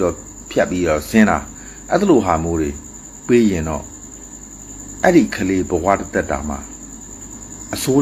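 A cricket trilling steadily and high-pitched in the background, under a man talking in phrases with short pauses.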